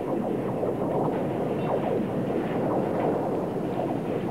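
A dense, steady rattling rumble, like a heavy steel-and-concrete structure shaking, added to the archive film of the twisting bridge deck.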